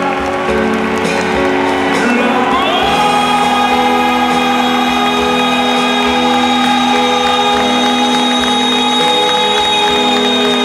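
Live rock band playing in a stadium, heard from the crowd. The singer glides up into a long held note about three seconds in and sustains it over steady chords, with the crowd cheering.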